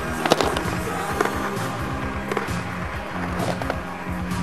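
Skateboard wheels rolling on asphalt with several sharp clacks, the loudest about a third of a second in, under a music track.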